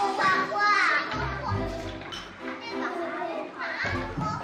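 Young children's voices chattering and calling out in a kindergarten classroom, over steady background music with a bass line.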